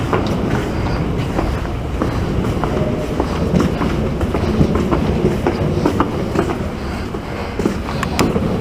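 Footsteps and handheld-camera handling knocks while walking briskly down a hard-floored corridor, over a steady low rumble.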